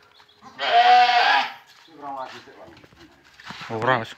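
Boer goat bleating once, a loud call about a second long that starts about half a second in.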